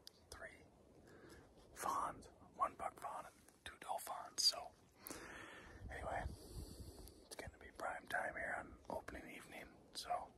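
A man whispering in short, quiet phrases, with a brief breathy hiss about five seconds in.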